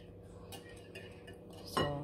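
A single faint clink of a metal whisk against a glass mixing bowl about half a second in, over a low steady hum, with a word spoken near the end.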